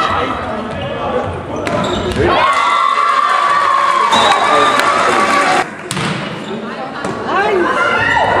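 A volleyball being hit hard in a sports hall, a couple of sharp smacks about two seconds in, then a long, high-pitched cheer held for about three seconds as the rally ends. Another smack of the ball comes near the end, followed by voices.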